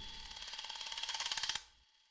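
Logo-sting sound effect: rapid mechanical ticking like a ratchet, growing louder and then cutting off suddenly about a second and a half in.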